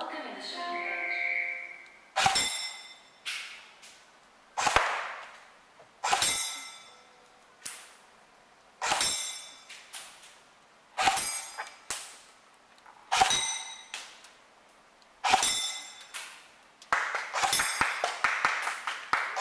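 Shots from an M4-style rifle at a wall of round shooting targets, each with a sharp crack and a ringing ding, about one a second. They come in a quick flurry near the end.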